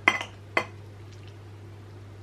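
Knife and fork clinking on a plate while cutting a fried egg: two short clinks within the first second, then only a faint steady low hum.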